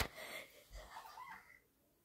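A child's faint, wheezy breathing right after a cry of pain, dying away about a second and a half in.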